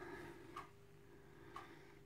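Near silence: quiet room tone with a low steady hum and two faint ticks, a second apart.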